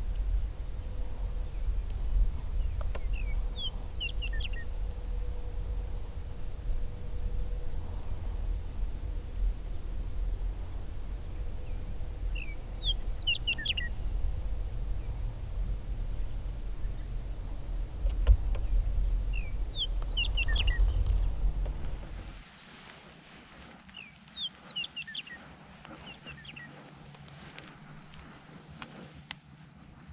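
A songbird singing, four short phrases of quick high chirping notes about eight seconds apart, over a low rumble that cuts off about two-thirds of the way through.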